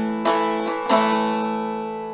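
Long-neck bağlama strummed in a short rhythm figure with the bottom string fretted along with the others: a chord rings on from a stroke just before, then two more strokes about two-thirds of a second apart, each ringing out and slowly fading.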